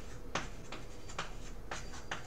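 A pen writing or marking, about five short scratchy strokes in a couple of seconds.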